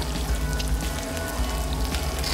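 Sizzling, crackling sound effect of chicken being cooked by a laser beam, over background music with a steady bass.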